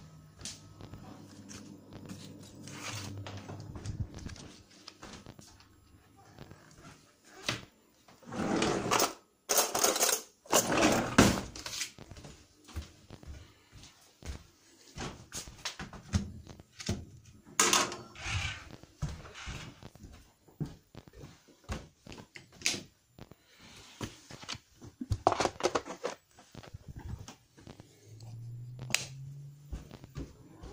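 Handling noises as wet cat food is dished out: scattered clicks and knocks of a fork, a food sachet and a plastic bowl, with several loud, short scraping bursts.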